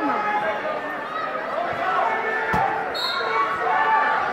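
Overlapping chatter of many spectators in a large gym hall, with one dull thump about two and a half seconds in and a brief high beep just after.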